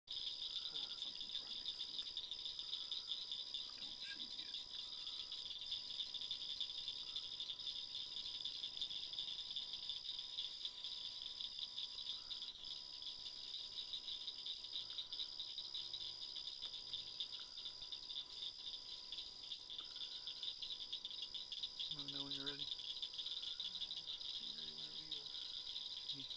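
Steady chorus of night insects such as crickets: a continuous high, finely pulsing trill.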